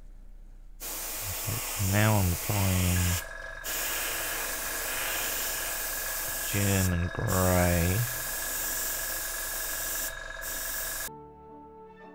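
Gravity-feed airbrush spraying paint in a steady hiss, broken by three brief pauses of the trigger and cutting off suddenly near the end. Two louder pitched sounds that fall in pitch come at about 2 s and again at about 7 s.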